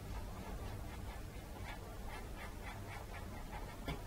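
Faint, quick scratchy strokes of a paintbrush dabbing dark acrylic paint onto canvas, several a second, over a low steady room hum.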